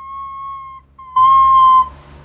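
Soprano recorder played with the finger holes not fully covered: held notes at one high pitch, then a short blip, then a much louder, harsher note with breathy hiss about a second in.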